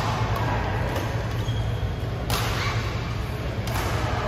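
Badminton racket strikes on a shuttlecock during a doubles rally: a few sharp hits, the loudest about two and a half seconds in and again near the end, over a steady low hum in the hall.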